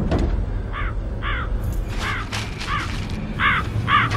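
Crows cawing: about six short caws, roughly in pairs, over a steady low rumble.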